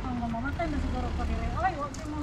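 Voices of people talking in the street, the words not clear, over a steady low rumble.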